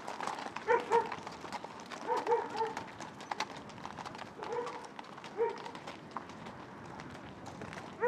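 Horses' hooves clopping and crunching on a gravel road as ridden horses walk past, an irregular run of sharp clicks. Several short barks stand out over them in the first five or six seconds.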